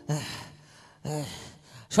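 A man's voice gasping twice: two short, breathy gasps about a second apart.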